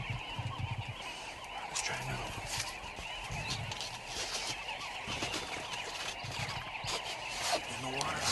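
A large flock of sandgrouse calling together at a waterhole, many overlapping calls making a continuous chatter, with a few brief clicks close by.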